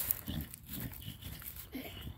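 An American Bulldog makes a few short, low vocal noises while rubbing its head along gravel.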